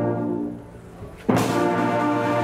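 A massed brass and wind band holds a chord that dies away for a moment. About a second and a half in, the full band comes back in suddenly and loudly with a sharp attack, then holds a new sustained chord.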